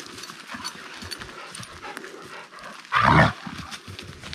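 Footsteps on dry grass and leaves, with one short, loud bark from a dog about three seconds in.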